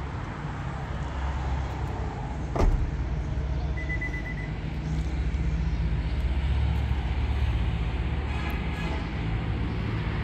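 A car door shut with a single solid thump about two and a half seconds in, over a steady low rumble.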